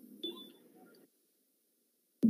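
Near silence between speakers on an online call: a faint, short sound about a quarter second in, then dead silence from about a second in.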